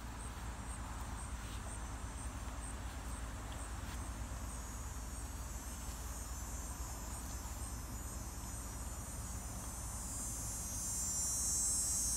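Insects chirping outdoors: a high, even chirp repeating a couple of times a second, with a steady low rumble underneath. Near the end a louder, high insect buzz swells in.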